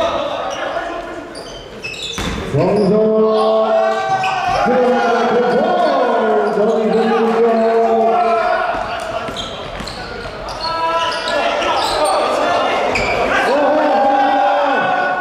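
Basketball bouncing on a hardwood gym floor, a few knocks in the first seconds. Over it come voices calling out in long, drawn-out tones, echoing in the large hall.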